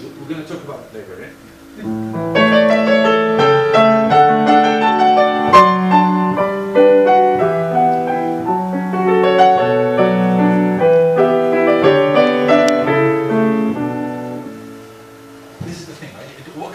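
Grand piano played in a quick, busy passage of chords over a repeating bass, starting about two seconds in and stopping shortly before the end, with a man talking before and after.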